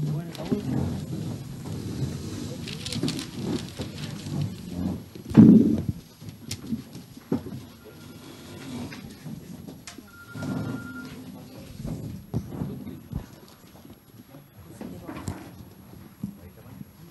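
Indistinct murmur of voices and shuffling in a meeting room, with a loud thump about five and a half seconds in and a few fainter knocks after it.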